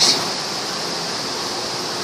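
Steady air-handling noise from a ventilation fan, an even rush with a hiss.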